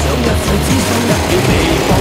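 Loud upbeat background music, with the engines of racing ride-on lawnmowers revving beneath it.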